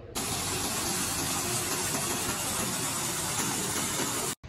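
Water pouring from a rock waterfall into a hot tub, a steady splashing rush that cuts off suddenly near the end.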